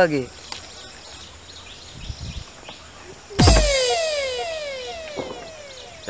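An edited-in comedic sound effect: a sudden loud hit about halfway through, followed by a string of quick falling tones, about two a second, that fade away. Before it there is only quiet background with a faint dull thump.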